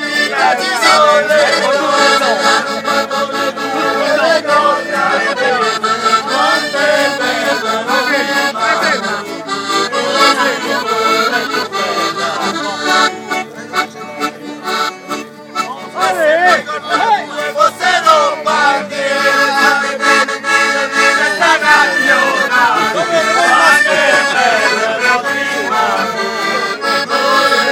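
A piano accordion and a nylon-string acoustic guitar play a traditional folk tune together, with men's voices singing along.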